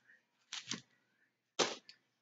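A few sharp clicks from small items or packaging being handled: two about half a second in, and two more about a second and a half in.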